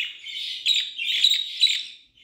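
Budgerigars chirping: a busy run of quick, high, short notes one after another.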